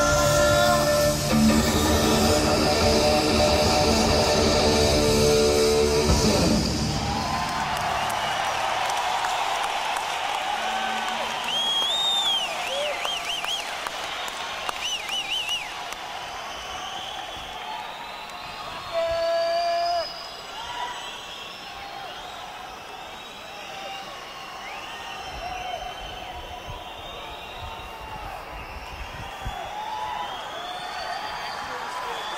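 A live rock band ends a song on a held chord, which cuts off about six seconds in, followed by an arena crowd cheering and whistling. A brief steady tone sounds about twenty seconds in, over crowd noise that slowly dies down.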